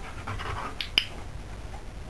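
A Belgian shepherd dog panting, with one sharp dog-training clicker click about a second in, marking the behaviour the dog is rewarded for.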